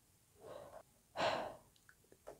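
A person drawing breath between sentences: a faint breath about half a second in, then a louder, sharper intake of breath a little past a second in.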